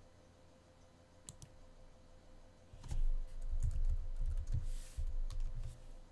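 Two light clicks about a second in, then a quick run of computer keyboard typing from about three seconds in, the keystrokes thudding heavily through the desk.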